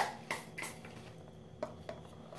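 Hand spray bottle of 70% alcohol squirted three times in quick short hisses, followed by a couple of light clicks of handling.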